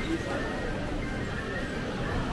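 Indistinct chatter of many people in a busy indoor food hall, a steady mix of voices and bustle with no one voice standing out.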